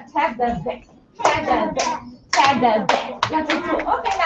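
Children's voices with hand clapping.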